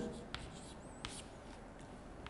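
Chalk writing on a chalkboard: faint scratching strokes with a few light taps as letters are chalked up.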